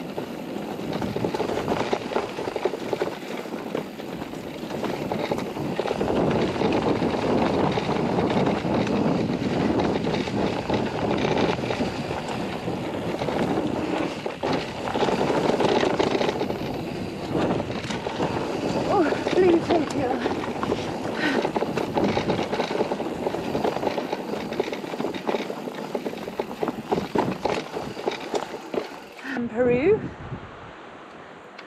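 Mountain bike descending a dirt trail, heard from a chest-mounted camera: tyre noise on the dirt and a constant rattle and clatter from the bike over bumps and roots.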